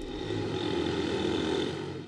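Steady street traffic noise, vehicle engines running with no single sound standing out.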